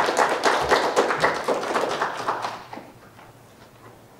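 Audience applauding, dying away about two and a half seconds in.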